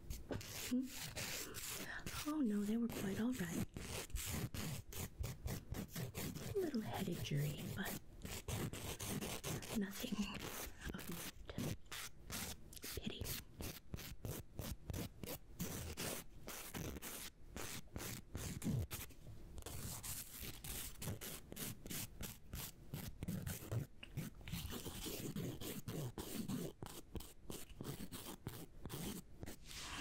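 Nail file scraping across fingernails in quick, repeated strokes, close to the microphone: the filing stage of a manicure, before buffing.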